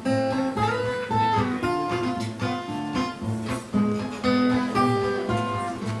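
Solo acoustic guitar playing an instrumental passage between sung verses: a picked melody of separate notes over bass notes.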